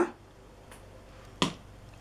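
A single sharp click about a second and a half in, with a fainter tick shortly before, against quiet room tone.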